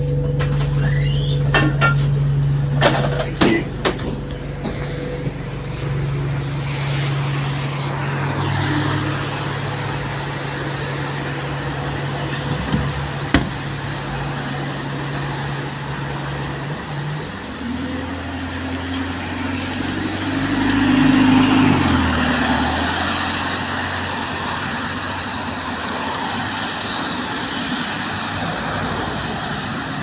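Alexander Dennis Enviro200 single-deck diesel bus idling at a stop, with a few sharp clicks in the first few seconds, then its engine rising in pitch and getting louder as the bus pulls away, before fading into road noise.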